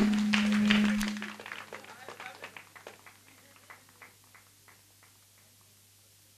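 A voice trails off in the first second, then scattered hand claps that thin out and die away by about five seconds in.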